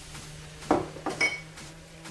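Glass bowls clinking: two sharp knocks about half a second apart, the second ringing briefly, as a small glass spice bowl is knocked against or set down by the glass dish.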